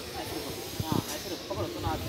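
Children's voices chattering without clear words over steady background hiss, with a single thump about a second in.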